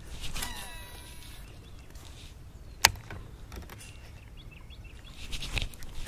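Baitcasting reel, a Shimano Curado DC, whining as its spool pays out line on a cast, the pitch falling as the spool slows over about a second. A single sharp click comes about three seconds in, followed by a few faint ticks of the reel.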